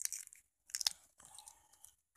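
Paper padded mailer envelope being handled and worked open by hand: crinkling, crunching paper in three short bursts.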